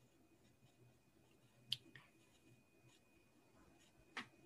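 Near silence with one short, sharp click a little under two seconds in and a fainter one just after, over a faint steady high tone.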